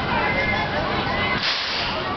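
Amusement-park crowd voices with a short hissing burst about one and a half seconds in.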